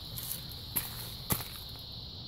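Two short clicks about half a second apart, footsteps or handling of the hand-held camera while walking, over a steady high-pitched insect drone like crickets.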